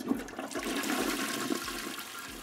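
Toilet flushing: a rush of water that starts suddenly and slowly dies away.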